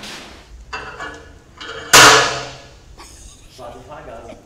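A single loud metal clank about two seconds in, fading over about a second: an iron weight plate being loaded onto a leg press machine.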